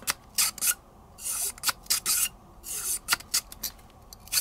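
Solvent-wet bore brush on a cleaning rod scrubbing back and forth inside a CZ 75 pistol barrel: a run of short, uneven scraping strokes.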